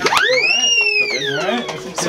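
A high whistle that swoops up sharply and then glides slowly down in pitch over about a second and a half, over people talking and laughing.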